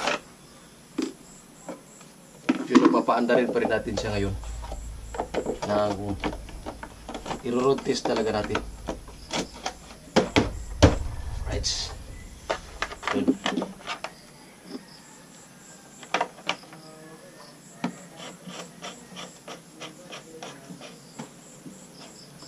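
Light clicks and knocks of plastic as the battery compartment cover is handled and fitted into a Honda BeAT scooter's floorboard. Voices talk during the first half, over a low rumble.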